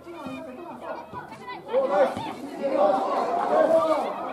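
Several voices shouting and calling at once around a football pitch, getting louder about two seconds in as the shouts pile up into a din.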